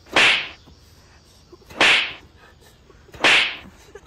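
Three loud swishing, whip-like hits about a second and a half apart, each cutting in suddenly and fading quickly: the blows of a staged play fight.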